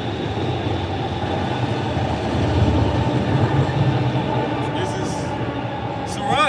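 Low rumble of a passing vehicle, swelling about two to four seconds in and then easing off.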